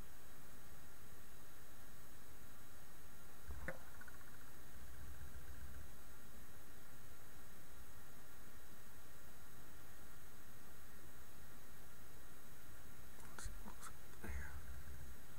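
Steady low hiss of room tone, with a faint brief handling noise about four seconds in and another near the end.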